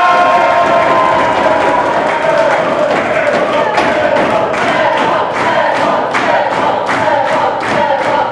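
A group of young people cheering with a long, held shout, joined from a couple of seconds in by rhythmic clapping in unison, two or three claps a second.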